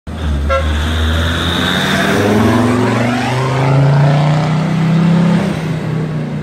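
Mercedes 270 CDI five-cylinder turbodiesel in a Range Rover Classic accelerating hard as it drives past, its engine note rising over a few seconds and easing near the end. A short horn toot about half a second in.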